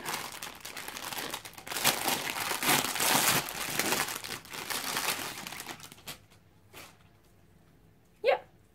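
Clear plastic packaging bag crinkling and rustling as it is handled and opened, a dense crackle that dies away about six seconds in.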